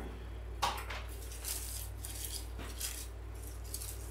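Light, scattered rustles and clicks of artificial holly and pine stems being handled and pushed into a candle ring, over a steady low hum.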